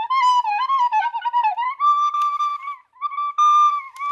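A recorder playing a wavering snake-charmer-style tune: a wobbling melody around one pitch for the first couple of seconds, then long held higher notes with a short break about three seconds in.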